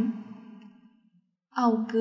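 Only speech: a woman reading Lao aloud, her voice trailing off into a brief silence, then starting the next sentence about one and a half seconds in.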